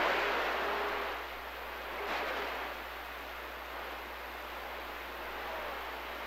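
CB radio receiver static: a steady rush of hiss from the speaker while the channel is open, slightly louder in the first second and then even, with weak stations too faint to make out underneath.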